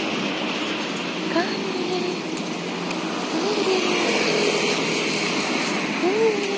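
Steady road-traffic noise from a beachfront street, with faint distant voices now and then.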